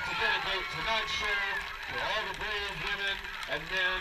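Public-address announcer speaking over the stadium loudspeakers.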